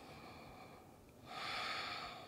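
A woman's slow, audible breathing while she holds a yoga pose: a faint breath, then a louder, longer breath starting a little over a second in.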